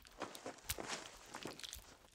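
Gauze pad rubbing and scraping over a grimy plastic earbud, a dense run of irregular scratchy crackles and sharp clicks, several a second, that starts suddenly out of silence.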